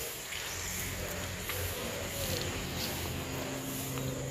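Faint outdoor background with a low steady hum and a few soft, distant rising-and-falling calls; no distinct event.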